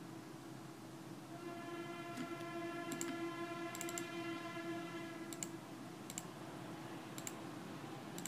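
Scattered computer mouse clicks. A faint steady humming tone with many overtones fades in about a second and a half in and dies away after about four seconds.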